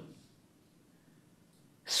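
A pause in a man's speech. The last word of one phrase trails off at the start, then there is near silence until a hissing 's' opens the next word just before the end.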